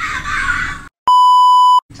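An edited-in censor bleep: one steady, high electronic beep lasting under a second, set into a cut to dead silence. Just before it, about a second of rough noise stops abruptly.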